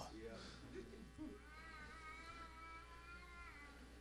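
Near silence: room tone, with a faint, high, held tone for about two seconds in the middle.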